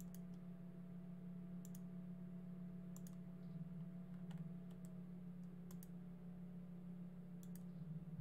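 Faint, scattered clicks of computer input at a desk, about seven over eight seconds, over a steady low hum.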